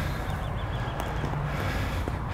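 Steady low outdoor rumble, with a faint click about a second in.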